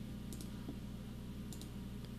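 Two faint computer mouse clicks, each a quick double tick, about a second apart, over a steady low electrical hum.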